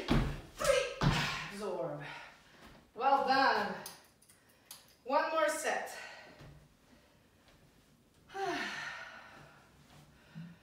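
A woman breathing hard and letting out several short voiced exhales and gasps after an intense set of jump lunges, with a couple of landing thuds on a tile floor in the first second.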